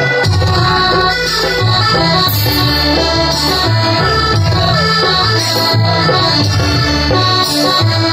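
Live band playing an instrumental passage of a Bodo song through a PA: a lead melody of held notes over a moving bass line and drum hits.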